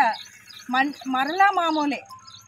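A woman speaking, in phrases broken by short pauses, with faint insect chirping in the background during the gaps.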